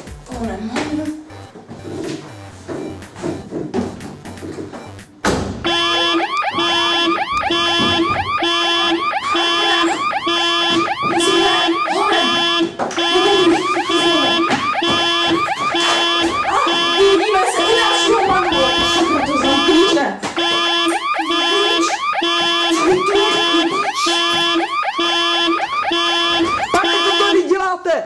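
A car alarm going off about five seconds in, a loud tone pulsing evenly on and off, set off by someone tampering with the car. Before it, quieter knocks and clicks of the car being handled.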